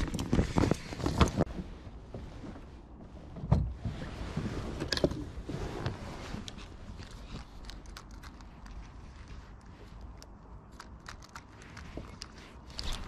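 Gear being handled on a plastic fishing kayak: a vinyl dry bag rustling and scattered clicks and knocks, with a burst of them in the first second or so and a louder thump about three and a half seconds in.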